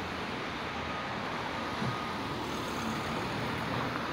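Steady street traffic noise from passing cars.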